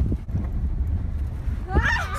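Low, steady rumble of a moving car's road and wind noise. A voice begins near the end.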